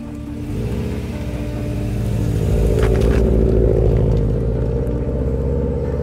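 Subaru WRX's turbocharged flat-four engine pulling away and driving off, its sound building to a peak about three to four seconds in and then easing, under background music.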